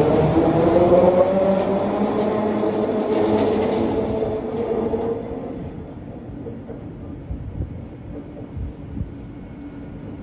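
Detroit People Mover train pulling out of the station, its linear induction motor whining and rising in pitch as it accelerates. The whine fades over the first five seconds or so as the train draws away along the elevated guideway.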